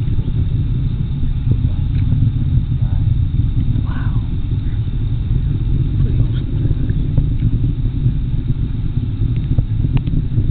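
Low, steady rumble of a Delta IV rocket's engines, heard from miles away as the rocket climbs toward orbit.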